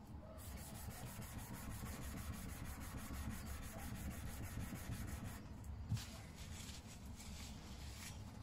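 Steel hand-plane blade rubbed flat, back down, on a 1200-grit diamond sharpening plate: a faint scraping in quick, regular back-and-forth strokes that stops about five seconds in. The back is being lapped to remove the burr left from honing the bevel. A light knock follows about a second later.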